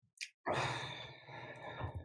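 A person sighing into a microphone: one long breathy exhale about half a second in that fades away over a second and a half.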